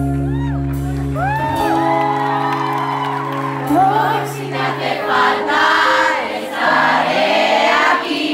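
Live concert music with a steady held chord, over which fans let out high screams and whoops. From about five seconds in, the bass drops out and loud crowd cheering and screaming takes over.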